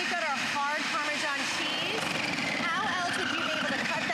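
NutriBullet Veggie Bullet electric food slicer running steadily with a motor whine as a potato is pressed through its slicing disc; the whine sags in pitch briefly about three seconds in.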